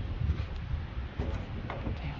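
Wind buffeting the microphone: a steady low rumble with faint gusting.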